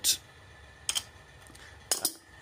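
Two short sharp clicks about a second apart over a low background.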